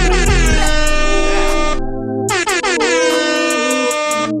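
Two long air-horn sound-effect blasts, the hip-hop DJ kind, over a hip-hop beat, with a short gap between them about two seconds in.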